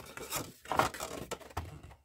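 Manila file folder being handled and turned over, the card rustling and rubbing against the board in a few short scraping strokes, the loudest a little under a second in.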